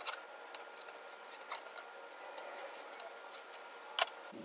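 Faint scratching and light taps of a pencil and a steel straightedge on a white oak slab as a layout line is marked, with a few small clicks and a sharper click at the very end.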